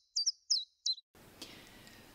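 Bird-chirp sound effect over digital silence: a quick run of short, high chirps that stops about a second in, followed by faint room tone.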